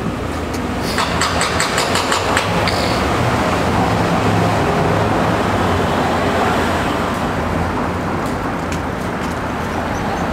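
Street traffic: cars passing, a steady road rumble that swells in the middle. A quick run of light clicks about a second in.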